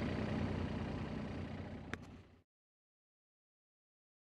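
Machine engine idling steadily, with one sharp click about two seconds in; the sound then cuts off abruptly into dead silence.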